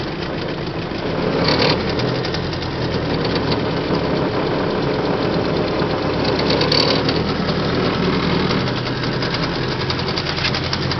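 A new 18 hp two-stroke outboard motor running steadily at low throttle, a continuous drone with rapid firing pulses. It gets a little louder about one and a half seconds in.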